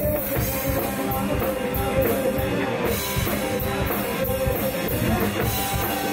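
Rock band playing live: a drum kit with steady cymbal strokes under distorted electric guitars and bass, a loud, dense rock groove.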